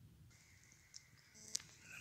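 Near silence: faint outdoor background with a thin high hum coming in shortly after the start and a single soft click about one and a half seconds in.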